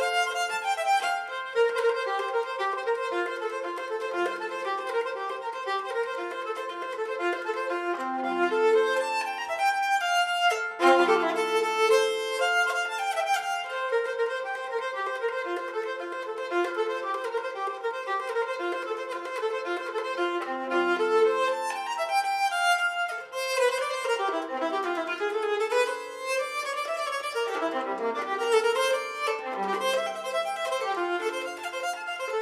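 Solo nyckelharpa, bowed, playing a fast and busy Swedish polska melody, the notes changing rapidly with a few very brief breaks in the phrase.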